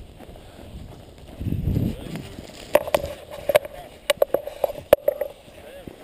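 A paraglider landing on dry ground. There is a short low buffet of wind on the microphone, then an irregular run of sharp knocks and clatter from touchdown and the landing steps, about three or four a second.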